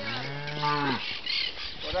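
A cow mooing once, a single drawn-out low call lasting about a second.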